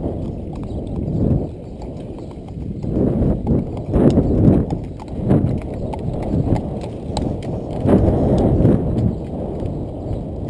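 Horses' shod hooves clip-clopping on a paved lane at a walk, several uneven strikes a second from more than one horse, over a low uneven rumble that swells and fades.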